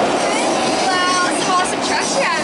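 Amusement-park ambience: a steady wash of noise, with a child's high voice briefly about a second in.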